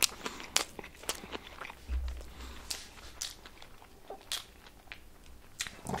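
A person biting into and chewing a burger close to the microphone: a string of sharp, crunchy clicks and softer mouth sounds.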